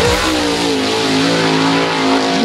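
Race car engine at high revs, rising in pitch at first and then holding a steady, loud note.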